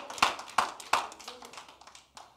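Scattered hand claps, irregular at about three a second, fading out over the first second and a half.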